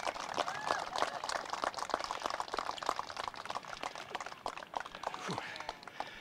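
A small crowd of guests clapping, with a voice or two calling out near the start; the applause thins and fades away toward the end.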